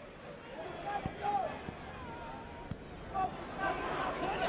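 Football stadium crowd ambience heard through the TV broadcast: a steady murmur with a few faint distant shouts and calls.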